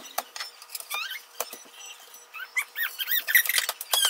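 A metal fork clicking and tapping on an electric griddle, with a run of short, high, squeaky chirps around a second in and more densely in the last second and a half.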